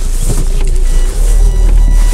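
Low, steady rumble of a car driving, heard from inside the cabin. About halfway through, faint tones come in.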